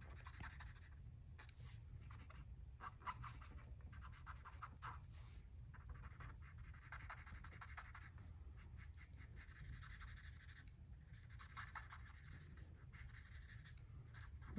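Faint scratching of an Ohuhu alcohol marker nib drawn across cardstock in short, repeated colouring strokes.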